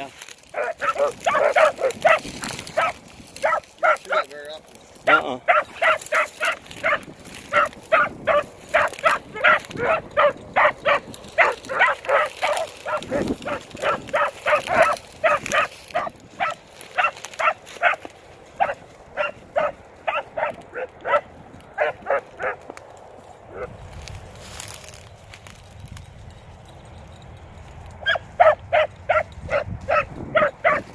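Beagles barking in quick, repeated calls while running a scent line, about two or three barks a second. The barking stops for several seconds near the end, then starts again.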